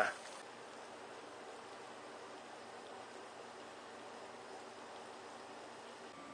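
Garden-hose shower head spraying water that falls steadily onto gravel, a faint even hiss.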